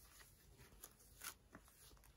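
Faint rubbing of a cloth wiping pen ink off a glossy-covered sheet to erase it, in a few soft strokes.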